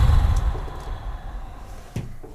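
Handling noise from a hardback book being lifted and moved near a desk microphone: a heavy low thump that fades over about a second and a half, with paper rustle, then a light knock near the end as the book is set down on the desk.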